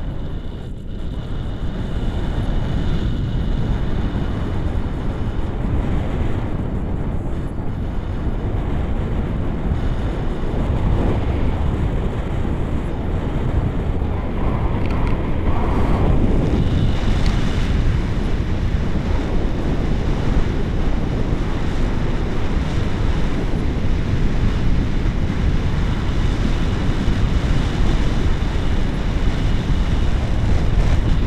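Airflow buffeting the microphone of a camera carried on a paraglider in flight: a steady, low rumble of rushing wind.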